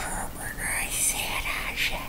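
A man whispering unintelligible words.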